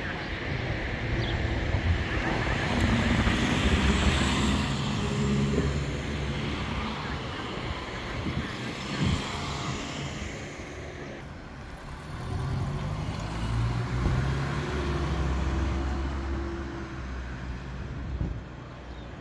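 Road traffic passing close by: car engines and tyre noise swell and fade, with one loud pass in the first few seconds and another a little after the middle.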